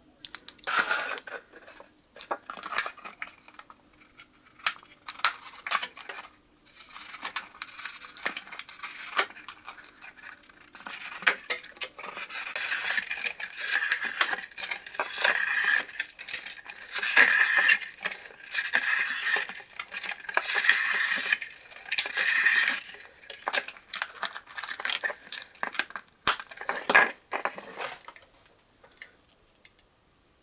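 Plastic bottle being sliced into a thin strip by a Swiss Army knife blade set through a bottle cap, a scratchy, crackling rasp as the plastic is pulled past the blade. Scattered clicks and crinkles of handling come first and again near the end, with a longer stretch of steady cutting in the middle.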